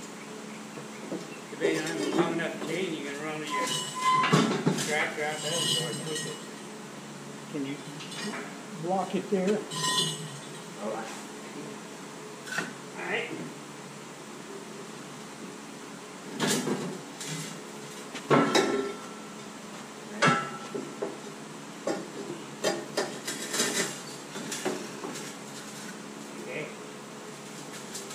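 Steel pry bar knocking and clinking against steel as a heavy lathe on roller pipes is levered along. There are scattered sharp metallic clanks, several of them in the second half, some ringing briefly.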